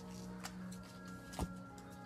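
Quiet background music with steady held notes, and two short clicks from foil booster-pack wrappers being shuffled by hand, about half a second in and near a second and a half.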